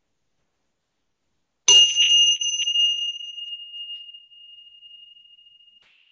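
A small metal chime struck sharply a little under two seconds in, with a few quick strikes close together, then a single clear high tone ringing on and slowly fading away.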